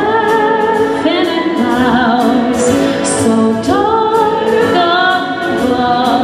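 A woman singing long held notes with vibrato into a microphone, backed by a live symphony orchestra with strings; she slides up into a new note at the start, about a second in, and again near the middle.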